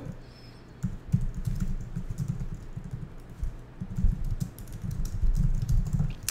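Typing on a computer keyboard: irregular runs of key clicks, starting about a second in.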